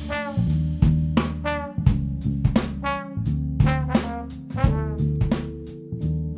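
Jazz horn section of saxophones, trumpets and trombone playing short, punchy chords over bass and drum kit, with sharp accented hits about twice a second.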